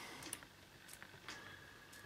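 Near silence with a few faint, short clicks: metal multimeter probe tips being lifted off and set against the terminals of AA batteries.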